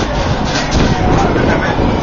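Capri funicular car running on its rails with a steady low rumble, and passengers talking.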